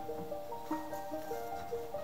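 Background music: a melody of short, evenly paced notes, several to the second.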